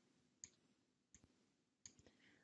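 Faint computer mouse clicks, three of them about two-thirds of a second apart, over near silence.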